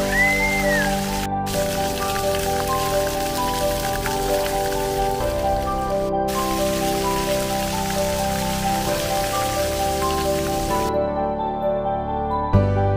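Background music over a steady hiss of splash-pad fountain jets spraying water onto the pavement. The water noise drops out briefly twice and stops near the end, leaving only the music.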